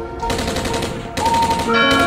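The opening of a rap outro track: a rapid rattling burst of percussive sound effects over music, with a held tone coming in a little past the middle as the beat builds.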